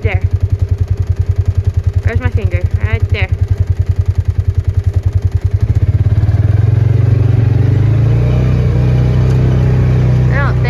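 A vehicle engine running with a low, evenly pulsing throb. About halfway through it picks up speed and the pulses run together into a steadier, louder drone as the vehicle moves off.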